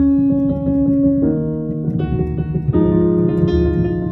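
Piano chords played on a keyboard, each held and then changing to the next, with changes a little over a second in, at about two seconds and again near three seconds.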